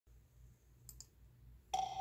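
Two quick clicks about a second in, like a computer mouse being clicked, over a faint low hum. Near the end a bell-like chime strikes suddenly and rings on: the first note of music playing from the computer.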